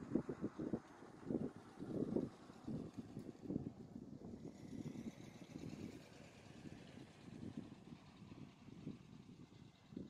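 Outdoor street ambience: irregular low thumps, strongest in the first few seconds and then fading, over a faint steady background, with a pickup truck driving along the road.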